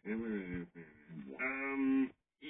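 A cartoon character's wordless cries played through a TV speaker: a few short, wavering exclamations, then one long held wail near the end. They come from Plankton as the secret formula is taken from him.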